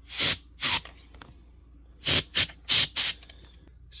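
Canned compressed air sprayed through its thin straw nozzle in short blasts, blowing spilled ink out from behind a drawer's hinge: two quick blasts in the first second, then four more in quick succession about two seconds in.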